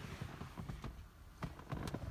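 Faint handling noise: a few soft clicks and knocks and some rustle as a phone is moved about inside a small aircraft cabin, over a faint low hum.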